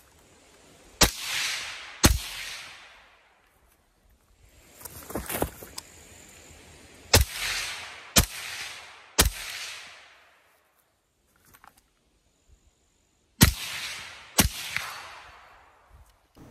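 Suppressed 11.5-inch AR-15 pistol being fired, about eight shots in short strings at roughly one a second, each crack followed by a short roll of echo.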